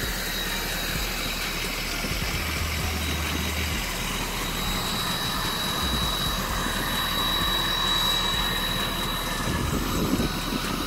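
Steady rushing wind noise on the microphone, with uneven low buffeting rumble.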